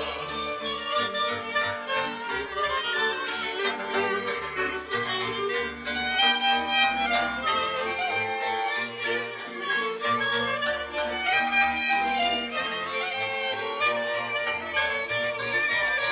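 Moravian cimbalom-band folk music: fiddles carry a lively tune over a bass line.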